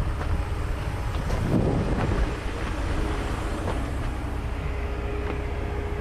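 Steady low rumble of a heavy diesel engine idling, with a constant faint hum over it and a brief swell about a second and a half in.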